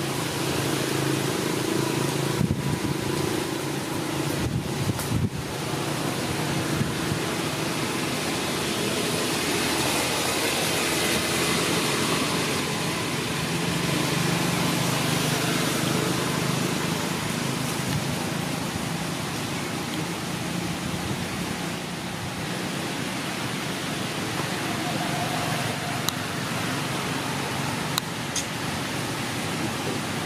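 Steady outdoor background noise: a hiss spread across the range over a low hum, with a few sharp clicks in the first several seconds.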